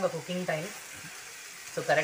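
Chicken liver frying in a spiced masala in a pan: a soft, steady sizzle while it is stirred with a spatula.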